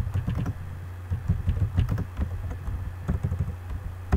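Computer keyboard typing in quick bursts of keystrokes with short pauses between them, over a steady low hum.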